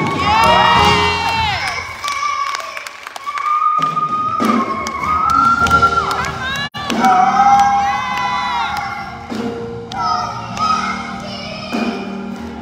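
Young girl singing lead into a microphone in gospel quartet style, holding long notes and bending into sliding runs. An audience cheers and shouts over it.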